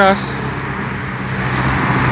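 Cars driving past on a street: a steady rush of tyre and engine noise that swells a little toward the end.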